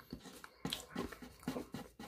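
A person chewing food with mouth smacks: a series of short, irregular clicks.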